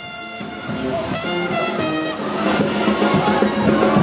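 A brass band playing a jazz second-line tune, with horns over a sousaphone's steady low line, fading in over the first second or so after a cut.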